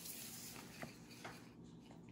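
Quiet handling of paper playing cards: a few faint light taps and rustles as a card is laid on a wooden table and the hand of cards is picked up.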